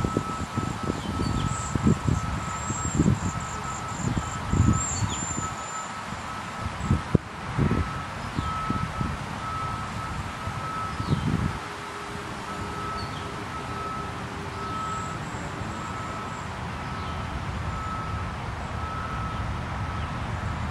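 Wind gusting and buffeting the microphone in uneven bursts that die down about halfway through. Under it, a faint high beep repeats steadily, with a few faint chirps.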